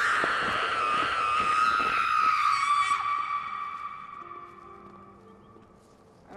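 A horror-film ghost shriek: one long high-pitched wail under a rushing hiss, sliding slowly down in pitch and fading away over the last few seconds.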